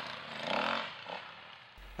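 Off-road dirt bike engine revving, its pitch rising and falling, fading out near the end.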